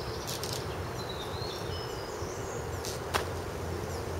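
A person swinging over a thick climbing rope and landing, heard as a few light knocks, the sharpest about three seconds in, over steady outdoor background noise with faint bird chirps.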